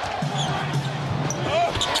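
Basketball dribbled on an arena hardwood floor under steady crowd noise during a live game, with short knocks and squeaks from play on the court.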